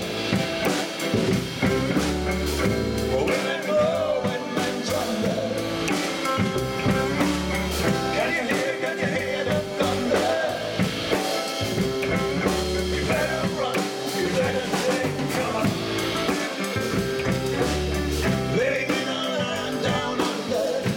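Live acoustic band playing an instrumental passage: acoustic guitar, double bass and percussion keep a steady, even groove.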